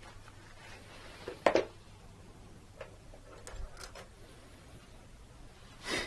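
A few light knocks and taps of painting gear being handled at a palette table, the loudest about one and a half seconds in, over a faint steady room hum.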